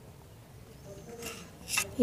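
A knife scraping dough pieces against a flour-dusted rolling board, two short scrapes, one about a second in and one near the end.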